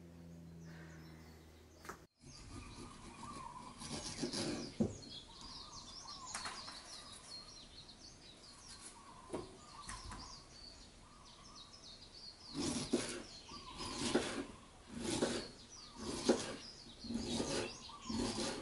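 Birds chirping, then a knife slicing through pineapple on a wooden cutting board, a series of crunchy cuts about every half second to a second in the last few seconds.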